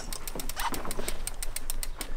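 Rapid, even ticking, about eight clicks a second, from a bicycle freewheel hub coasting as a fat bike is wheeled along, with a low steady hum underneath.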